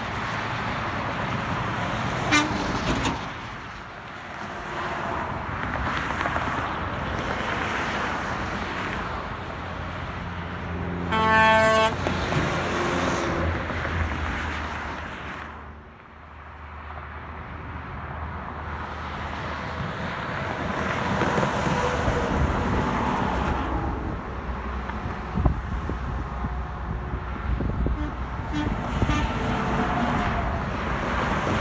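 Highway traffic passing below: trucks and cars going by, with a semi-truck's air horn sounding once for about a second, roughly a third of the way in, the loudest sound.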